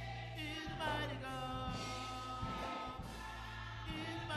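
Gospel choir singing with instrumental accompaniment, held chords over a sustained bass.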